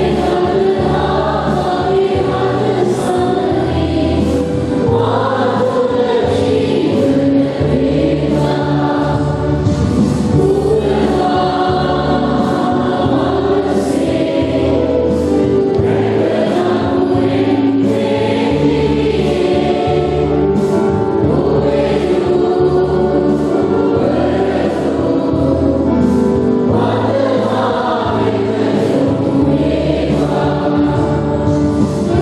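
Church choir singing a hymn in sustained phrases over instrumental chords.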